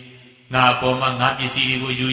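A Buddhist monk's voice reciting in a level, chant-like intonation, resuming after a brief pause about half a second in.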